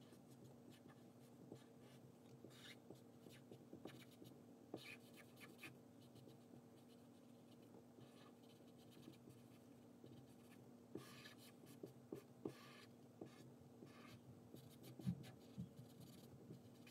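Faint scratching of a marker tip rubbing back and forth on paper as an area is coloured in, in short runs of strokes over a low steady hum. A soft knock comes about a second before the end.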